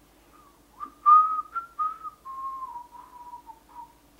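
A person whistling an idle tune of a few notes. The pitch rises a little, then drifts downward over about three seconds.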